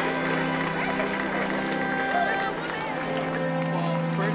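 Background music with steady held tones, over the murmur of a crowd talking.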